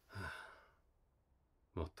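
A man's sigh, one breathy exhale of about half a second just after the start, recorded close on a dummy-head binaural microphone.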